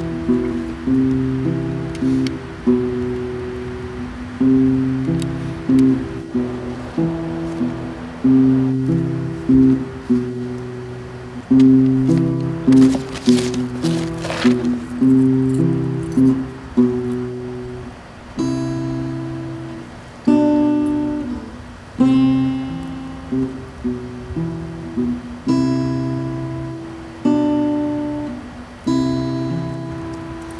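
Acoustic guitar music: plucked chords that repeat, with a higher melody line coming in a little past halfway.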